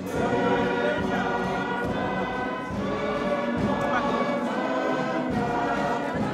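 Church choir singing with musical accompaniment, a steady hymn-like song.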